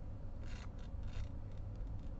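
Rubbing and rustling of a diamond painting canvas and its clear plastic cover film as it is handled, in two brief scrapes about half a second and a second in.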